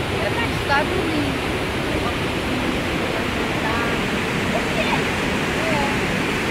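Steady, loud rush of a river pouring over the crest of a large waterfall.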